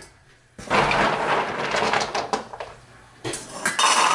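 Dry dog kibble poured from a scoop into stainless steel bowls, the pellets rattling against the metal. There is one long pour and then a shorter one near the end.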